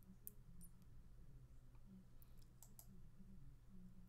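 Near silence over a low steady hum, with a few faint, sharp computer mouse clicks: two near the start and three in quick succession a little past the middle.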